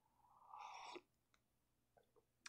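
One faint sip from a mug, about half a second long.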